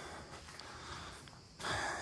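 A man's faint breathing, with a louder breath in near the end.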